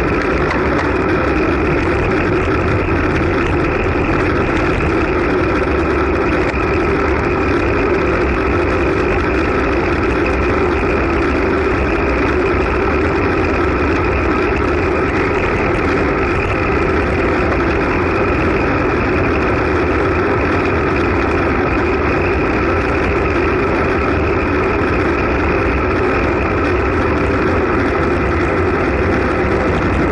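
Steady rush of wind and road noise picked up by an action camera on a road bike riding at about 34 to 42 km/h on smooth track asphalt.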